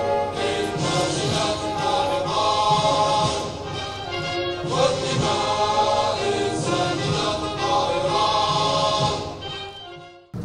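Choral music with orchestral accompaniment, a choir singing sustained notes, fading out near the end.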